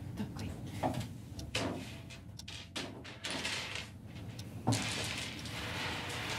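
Knocks on a wooden tabletop and the scraping rattle of a pile of small hard sweets being slid across it by hand, with the longest sliding noise in the second half.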